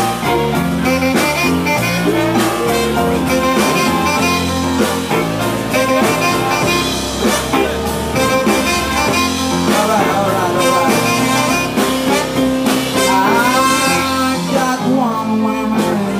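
Live New Orleans-style rhythm-and-blues band playing, with keyboard, horns, guitar, bass and drums together at a steady loud level.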